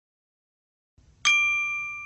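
A single bright, metallic sound-effect ding, struck a little over a second in and ringing on as it slowly fades.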